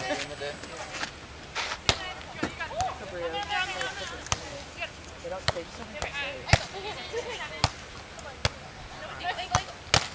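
Beach volleyball struck by players' hands and forearms during a rally: a string of sharp slaps about a second apart, the louder ones from harder hits, with faint voices.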